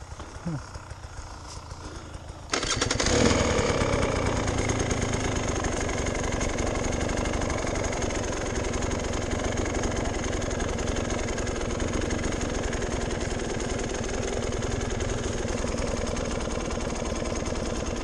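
Enduro dirt bike engine starting suddenly about two and a half seconds in, then running steadily at low speed.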